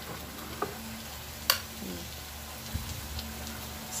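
A metal spoon stirring and scooping through coconut-milk sauce in a glass baking dish, with small ticks and one sharp clink of spoon on glass about one and a half seconds in, over a steady hiss.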